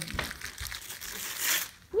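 Christmas wrapping paper crinkling and tearing as it is pulled off a gift box, the rustle growing to its loudest near the end.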